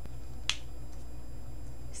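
A single short, sharp click about half a second in, over a steady low electrical hum.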